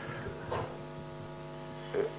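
Steady electrical mains hum in a pause between spoken sentences, with a faint, brief sound about half a second in.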